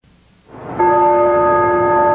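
A sustained bell-like tone with several steady pitches rings out from about three-quarters of a second in, after a brief quiet gap, and holds evenly.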